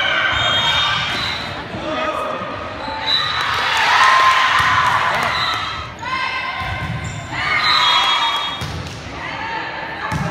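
Volleyball rally in a gymnasium: players' and spectators' voices shouting and cheering, with the ball being hit, all echoing in the hall. The voices swell loudest about four seconds in and again near eight seconds.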